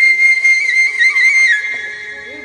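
Background music on a flute: a long high note held with small ornamental turns, fading out near the end.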